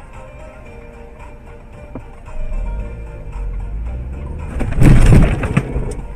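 Car collision heard from inside the camera car: a sudden loud impact about four and a half seconds in, lasting about a second, over steady engine and road noise.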